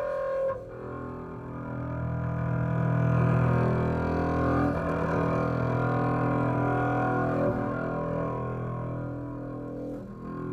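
Acoustic double bass played with the bow: a sound breaks off just after the start, then a long low note rich in overtones swells to its loudest about three seconds in and is held, easing off slightly toward the end.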